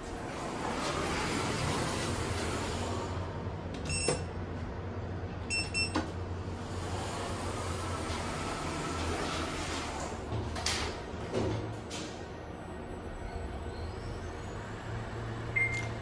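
Schindler 3300 traction elevator's doors sliding open and closed. A short electronic beep sounds about four seconds in and a few more follow soon after, over a steady low hum in the cab.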